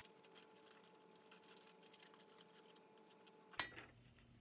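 Scissors cutting printer paper: faint, quick snipping clicks, with one louder sharp sound near the end.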